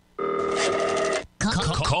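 Telephone ringing: one electronic ring of steady layered tones, about a second long, starting just after the start and stopping sharply. A voice comes in near the end.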